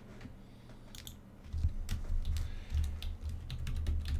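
Typing on a computer keyboard: a quick run of keystroke clicks, starting about a second in, as a password is entered.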